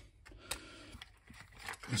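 Plastic power-supply case being handled and lifted off its circuit board: a sharp click about half a second in, then a few faint ticks and light scraping.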